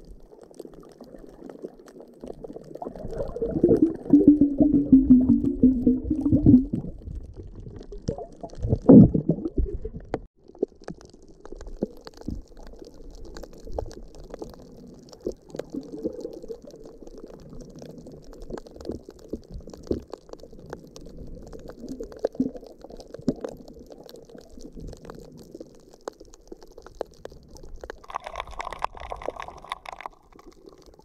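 Muffled water sound picked up by a camera held underwater in shallow water: a low rumbling with many small clicks. It swells louder for a few seconds about three seconds in, and again about nine seconds in.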